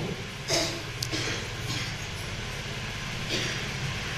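A pause in a man's speech: a steady low hum of room noise picked up through the microphones, with a few faint short noises.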